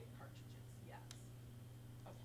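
Near silence: a steady low hum of room tone, with a few faint whispered sounds from the woman working.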